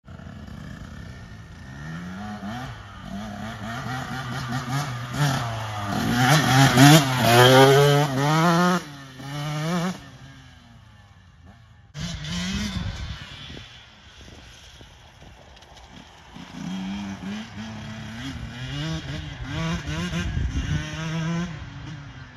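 KTM 150 SX two-stroke dirt bike engine revving up and down as it is ridden, its pitch climbing repeatedly under acceleration and loudest about seven seconds in. The sound drops away near ten seconds, returns abruptly two seconds later, and the bike revs on, quieter.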